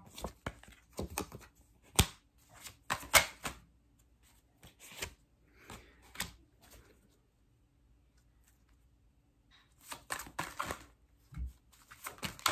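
A deck of tarot cards shuffled by hand: quick runs of crisp card clicks and flaps, thinning out around the middle, with a short pause before another run and a soft thump near the end.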